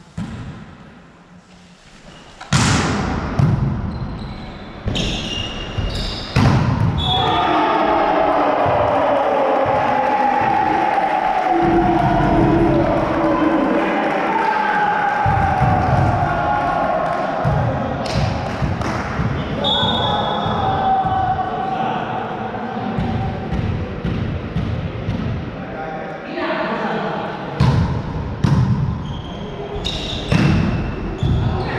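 Volleyball being struck in a gym hall: a sharp smack about two and a half seconds in, a few more a few seconds later, and more near the end. Between them, about twenty seconds of loud shouting voices ring in the hall.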